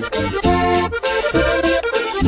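Instrumental break in a norteño corrido: accordion playing a melody over a steady bass beat.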